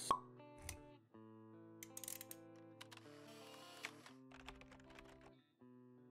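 Quiet intro sting music of held notes, opening with a sharp pop and followed by a soft low thud and a few light clicks and swishes, as sound effects for an animated logo reveal.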